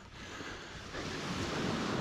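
Low sea surf washing on a sandy shore, with wind, as a steady rushing that swells slightly in the second half.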